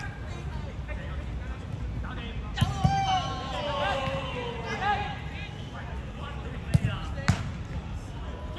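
A football being kicked with sharp thuds: two strikes in quick succession partway in, then two more about half a second apart near the end. Players shout to each other during the play.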